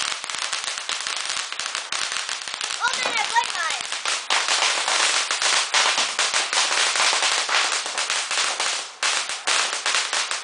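Firecrackers going off in a continuous, dense run of sharp cracks, with a voice heard briefly about three seconds in.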